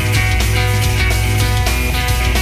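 Rock band playing live at full volume: electric bass, guitar and drums, with a steady drum beat.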